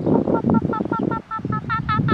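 Wind buffeting the microphone, with a rapid, even run of short pitched call notes, about seven a second, from a bird in the background. The wind drops out briefly a little past the middle.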